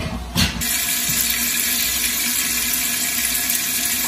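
Water pouring steadily into a Presto pressure canner, splashing onto the perforated rack in the bottom of the pot as it fills toward the fill line; the pour starts about half a second in.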